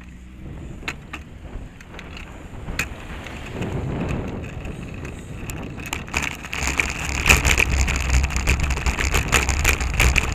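Riding noise picked up by a bicycle-mounted camera: wind on the microphone and tyre rumble growing steadily louder as the bike picks up speed. Occasional sharp clicks and rattles come from the bike going over bumps.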